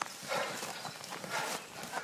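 Footsteps of people walking through tall grass, an uneven crunching and swishing of stems underfoot.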